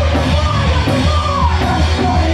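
Punk rock band playing live and loud: distorted electric guitar, bass guitar and drums, with a woman's yelled vocal lines that slide down in pitch.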